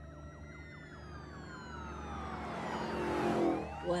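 Emergency-vehicle siren wailing, its pitch falling slowly over a few seconds while growing louder, then starting to rise again near the end.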